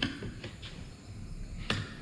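Faint handling sounds of contact cement being spread along the edge of a white furniture panel, with light ticks and one sharp click near the end.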